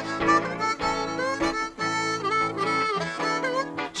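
Blues harmonica playing a fill between sung lines, with notes bent up and down, over a guitar accompaniment.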